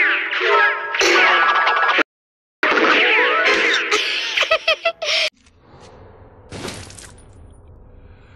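Cartoon soundtrack of busy music with comic gliding and impact sound effects. It drops out for half a second about two seconds in and cuts off abruptly a little after five seconds. A quieter low hum follows, with a single whoosh-and-hit around six and a half seconds.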